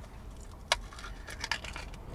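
Small plastic tartar sauce cup being handled as its lid is worked open: light crackles and clicks, with one sharp click about two thirds of a second in, over a low steady rumble.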